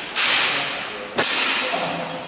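Two sharp strikes in longsword sparring, about a second apart, each trailing off with hall echo: steel training blades meeting.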